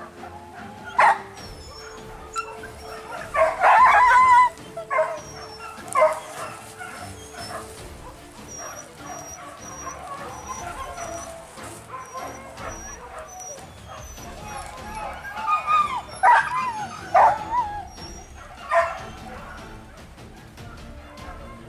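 Hunting dogs barking and yelping in short, loud bursts: once about a second in, a cluster around four to six seconds, and again near the end.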